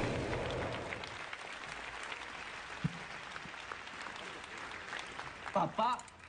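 Audience applauding, loudest at the start and slowly dying away; a voice speaks briefly near the end.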